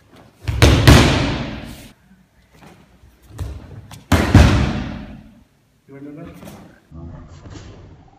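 Bodies slamming onto tatami mats in aikido breakfalls: two loud slams, about a second in and about four seconds in, with a smaller thud between them. Each slam echoes in a large hall.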